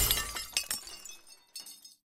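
Breaking-glass sound effect on the outro card: a loud shattering crash that fades into scattered tinkling shards, with a last few clinks about a second and a half in.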